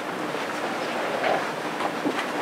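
Steady room noise and hiss from a lecture hall, even and unbroken, with no clear event in it.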